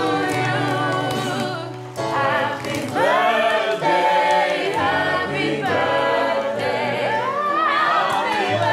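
A group of voices singing together in chorus, over a low sustained note that drops out for stretches and returns near the end.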